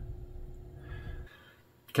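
Faint low hum with a soft rustle of handling noise, cutting off abruptly about a second and a half in. A click follows just before the end.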